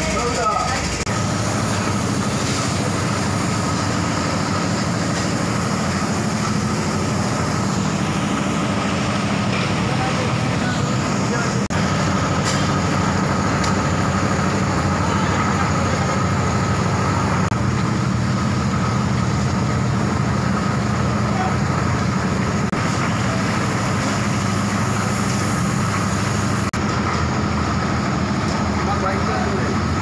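Steady street background noise: traffic running with indistinct voices.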